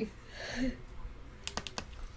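A quick run of four or five sharp clicks close to the microphone about a second and a half in, after a soft faint sound.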